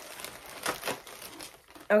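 Soft crinkling rustle of things being handled, with a few brief scratchy sounds about a second in.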